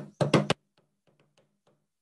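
Hands drumming a rhythm on a desktop: four loud knocks in the first half second, then a run of faint, quick taps.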